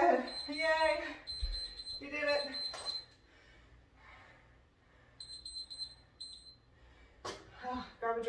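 Electronic interval timer beeping, a shrill high tone in rapid pulses, marking the end of a timed work interval. It runs in two long stretches in the first three seconds, then two short runs about five seconds in before it stops.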